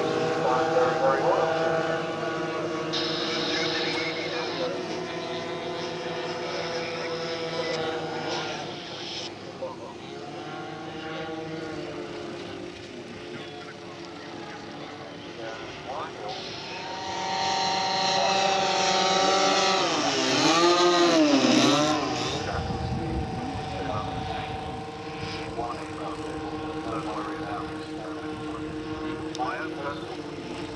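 Large multi-engine RC scale model aircraft flying past, its engines giving a steady drone. The sound grows louder about two-thirds of the way in and sweeps down and up in pitch as the model passes close, then it drones on more quietly.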